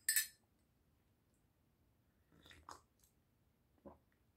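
A metal spoon clinks against a ceramic mug once with a brief ring as the stirring of a hot tea ends. A few fainter clicks follow about two and a half seconds in, and a soft knock comes near the end.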